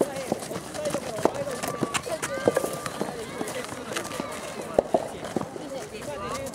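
Youth soccer players calling and shouting to each other across the pitch during play, with a few sharp thuds scattered through.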